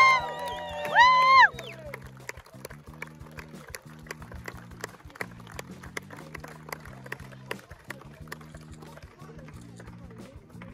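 Two loud, pitched whoops of cheering in the first second and a half, then music from a loudspeaker with scattered clapping from a small crowd.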